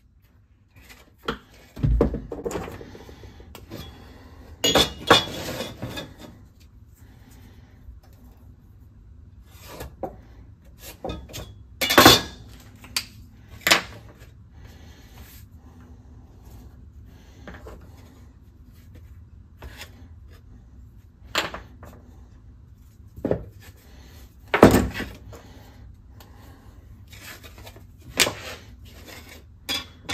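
Workshop handling sounds on a wooden workbench: a steel rule, a square and a cardboard template being picked up, slid and set down, giving scattered knocks and clinks with rubbing between. The sharpest knocks come about twelve seconds in and near twenty-five seconds.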